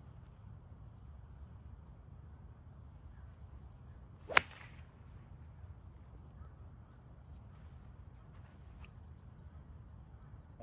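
A golf iron striking the ball: a single sharp, crisp click about four seconds in, a clean strike that sounds like a pro shot, over a faint steady outdoor background.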